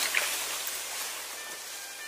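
Steady rushing hiss, with faint music notes coming in about halfway through.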